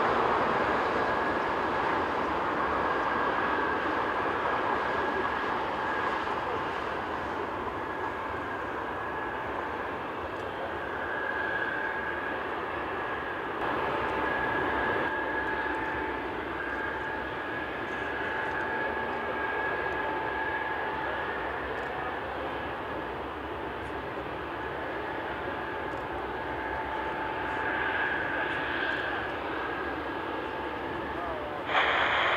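Airbus A380's four Rolls-Royce Trent 900 turbofans running at taxi power as the airliner rolls along the taxiway: a steady jet whine with two high, steady tones over a continuous rush.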